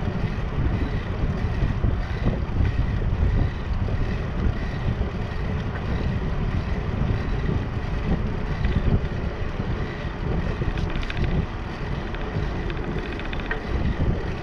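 Wind buffeting the microphone of a camera on a moving bicycle: a steady low rush that surges and dips, with the bike's tyres rolling over the concrete deck beneath it.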